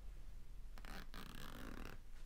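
Quiet handling of a neoprene fabric bag: soft rubbing and rustling, with a couple of faint clicks about a second in.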